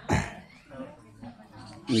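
A man clears his throat once, sharply, right at the start, followed by faint background chatter from people nearby.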